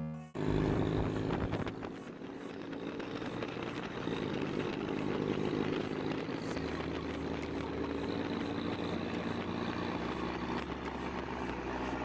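Road noise heard from a moving car with its window open: engines, tyres and wind, with music underneath. The noise begins abruptly just after the start and runs steadily.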